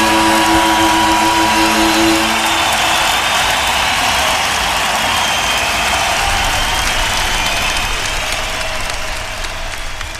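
The last held chord of the strings and band dies away about two to three seconds in, leaving a live concert audience applauding. The applause fades out near the end.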